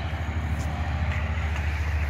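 A car engine idling with a steady low rumble.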